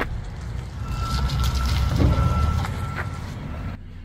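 A police SUV driving off: a steady low rumble, with a thin high tone sounding on and off through the middle.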